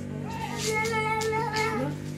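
A child's high-pitched drawn-out vocal note, like a sung "la", held for over a second and bending upward at the end, over steady background music.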